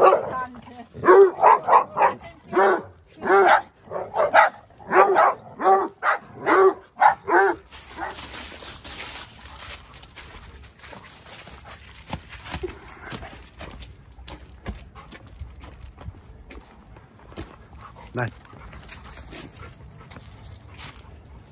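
Dogs barking and yapping in play, a quick string of about a dozen loud barks over the first seven or so seconds. After that, a quieter stretch of steps on a gravel path.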